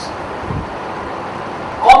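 Steady room hiss through a pause in a man's amplified talk, with a faint low thud about half a second in. His voice comes back near the end.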